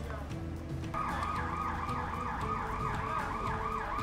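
An electronic siren in a fast yelp pattern, a pitched wail sweeping up and down about four times a second, starting about a second in.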